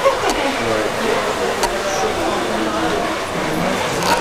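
Indistinct voices talking quietly, softer than nearby speech and not clear enough to make out words, with a short click at the very start.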